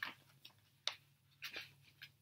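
Paper pages of a picture book being turned by hand: a few short, soft rustles with a crisp click about a second in.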